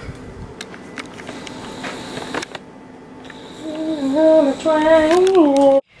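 Faint clicks of kitchen handling, then a woman singing a short tune of a few held notes in the second half, cut off abruptly near the end.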